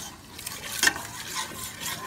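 A spoon stirring and scraping through shrimp in a stainless steel pot, with the butter sizzling as the shrimp sauté. The sharpest scrape comes a little under a second in.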